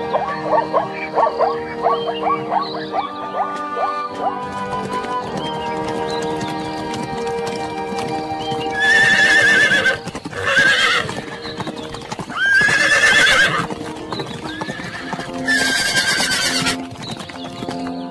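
Horse stallions squealing as they fight: four loud, shrill, wavering calls of about a second each, starting about nine seconds in. Background music plays throughout.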